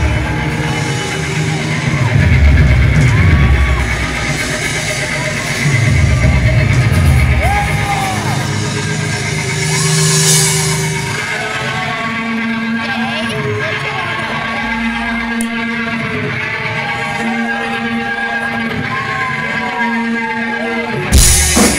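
Live rock band playing loudly: held electric guitar notes with bending pitches and heavy bass swells every few seconds, then a steadier held tone in the second half with no steady drum beat.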